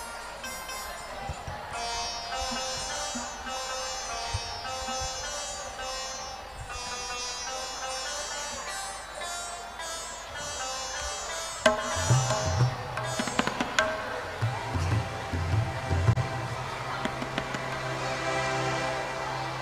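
Indian stage music on harmonium and tabla: the harmonium plays a sustained melodic prelude, and about twelve seconds in it gets louder as tabla strokes join with deep bass-drum beats.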